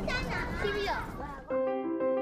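High-pitched children's voices in the background outdoors, then keyboard background music with steady, evenly held notes cuts in abruptly about one and a half seconds in.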